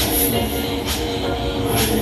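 Break Dance Extreme fairground ride running: the spinning platform and gondolas give a steady low rumble with a hum, over dance music from the ride's speakers.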